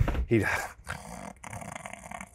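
A man's short chuckle, then a drawn-out, raspy mock snore starting about a second in.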